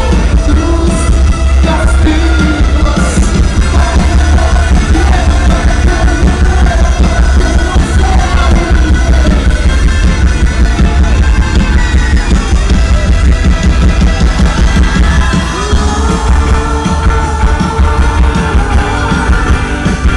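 Live rock band playing loudly, with drums, electric bass and guitar under a male lead singer, the low bass heavy and boomy. A long held sung line comes in about three quarters of the way through.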